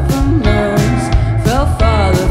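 Live indie rock band playing: a woman sings a gliding melody into a microphone over electric guitars, bass and drums, with regular drum and cymbal hits.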